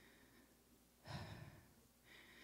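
A woman's breath, a short sigh, picked up close on a handheld microphone about a second in; otherwise near silence.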